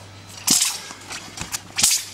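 Two sharp swishing snaps of a Chinese broadsword (dao) being swung hard through the air during a form, one about half a second in and one near the end.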